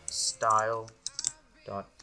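Computer keyboard typing, a few quick keystrokes about a second in, around brief bits of speech.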